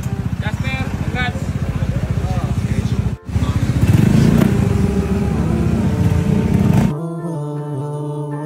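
Small motorcycle engine running close by: a steady rapid putter at idle. After a brief break about three seconds in, it runs louder as the bike pulls away. Background music takes over near the end.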